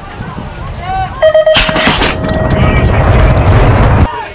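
BMX starting-gate cadence: a few quick beeps, then a long tone as the gate drops with a loud bang about a second and a half in. Wind rush and riding noise build on the rider's camera as he sprints off the gate.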